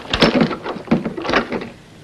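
Wooden window shutters being pushed open, a quick run of knocks, rattles and scrapes over the first second and a half.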